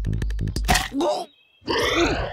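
A cartoon character's harsh grunting cry, rattling in quick pulses, then a louder voiced burst. It cuts off into a brief near-silent gap, and another voice starts near the end.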